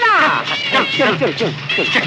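A crowd of men cheering and shouting excitedly over one another, many high, sliding shouts overlapping, with band music underneath.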